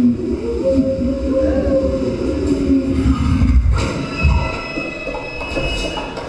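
Train running past, rumbling, with its wheels squealing. A high, steady squeal comes in about four seconds in. The sound comes from the film's soundtrack as an elevated train crosses the screen.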